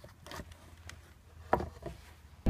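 Faint handling sounds on a wooden cigar box guitar, with one louder short knock about one and a half seconds in.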